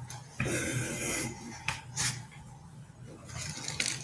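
Handling noise: a rustle and rub, two sharp clicks just before the middle, then rustling again near the end, as objects are moved about close to a microphone.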